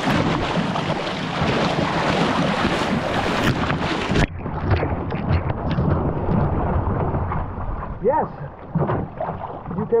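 Dragon boat paddle blade driven hard and fast into the sea from a one-person outrigger canoe, splashing on each stroke, with wind on the microphone. This is the hard, splashy hammering stroke that jars the joints. About four seconds in, the bright hiss cuts off suddenly and the strokes go on duller.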